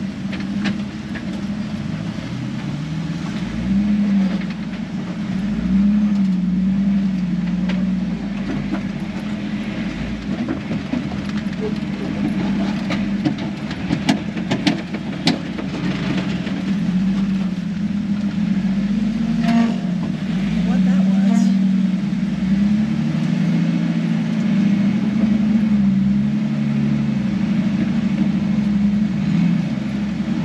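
A 4x4's engine running at low revs, heard from inside the cab as it crawls over rock, its note rising and falling slowly as the throttle is worked. A few sharp knocks come about halfway through.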